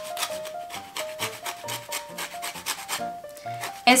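Lemon peel being grated on a flat stainless steel hand grater: a quick series of rasping strokes as the fruit is rubbed over the blades, with a brief pause about three seconds in.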